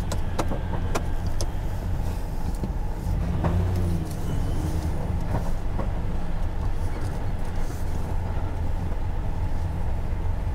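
Engine and running noise of an RV rig heard from inside the cab as it moves into a parking spot, a steady low rumble. A few light clicks or rattles come in the first second and a half.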